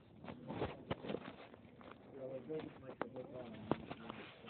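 Close knocks and scrapes from a small puppy pawing at the camera, with three sharp knocks standing out.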